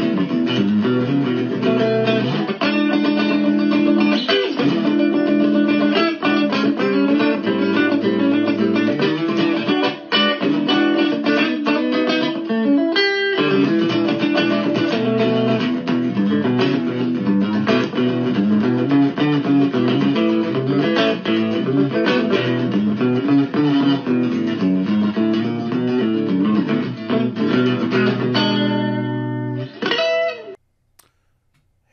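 Electric guitar played through a small amplifier: a continuous flowing run of picked notes and chords, with a brief break about halfway and the playing dying away at the very end.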